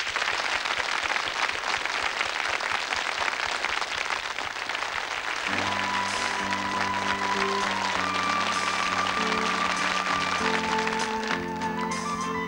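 Studio audience applauding a performer's entrance. About five seconds in, slow band music starts under the clapping: a high, held melody over sustained chords.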